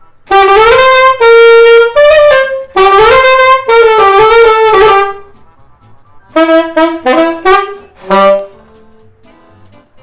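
Saxophone played as a demonstration: a loud phrase of several held notes lasting about five seconds, then, after a short pause, a softer phrase of shorter notes.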